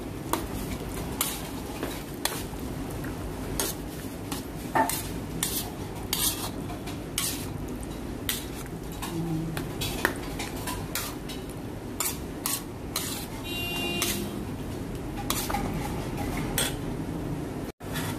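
A spatula stirring a thick cream sauce in a nonstick pan. It scrapes and taps against the pan in irregular strokes, about one or two a second, keeping the sauce moving so it doesn't stick.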